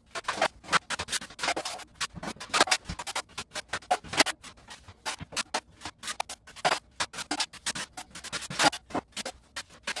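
Wide steel drywall knife scraping and spreading setting-type spackle over a mesh-taped wall patch, in quick, irregular strokes, several a second.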